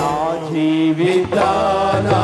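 Worship music: a single voice sings long, sliding held notes over steady instrumental backing.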